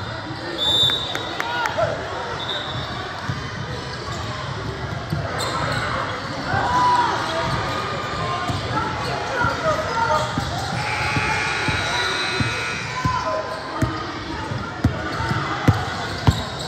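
A basketball bouncing on a hardwood gym floor during play, with knocks and the voices of players and spectators in a large, echoing hall.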